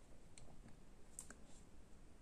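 Near silence, broken by a few faint clicks of a fingertip tapping a smartphone touchscreen, two of them close together a little past the middle.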